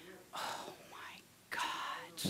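A person's whispered, breathy voice in two short bursts, one about a third of a second in and another near the end.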